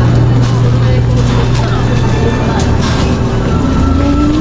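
Supermarket ambience: a steady low hum with faint voices of other shoppers in the background.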